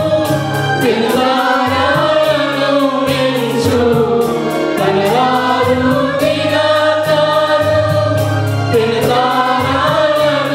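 A mixed choir of women and men singing a Telugu Christian worship song in long held, gliding notes, with an electronic keyboard playing steady bass notes underneath.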